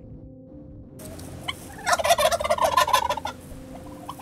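A wild turkey tom gobbling once, a loud rapid rattling call lasting about a second and a half, starting about two seconds in, over steady background music.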